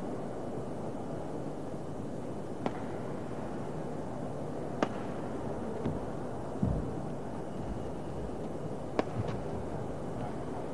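Badminton rackets striking a shuttlecock in a rally: about five sharp cracks, one to two seconds apart, with a low thump near the middle. Under them is a steady murmur from the arena crowd.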